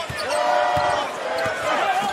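Basketball dribbled on a hardwood court, a few bounces, with voices in the arena behind it.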